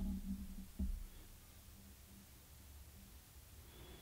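Faint room tone with a low hum, and a soft low bump just under a second in.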